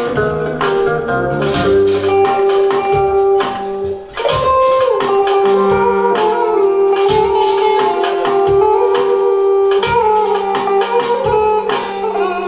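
Electric guitar and a Korg arranger keyboard playing an Azerbaijani instrumental tune together. An ornamented, sliding melody runs over a steady rhythm of drums and bass, with a short break about four seconds in.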